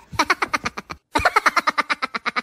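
A rapid, even run of short voice-like pulses, about ten a second, with a brief break about a second in.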